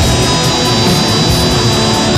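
Heavy metal rock song with electric guitars and drums playing steadily.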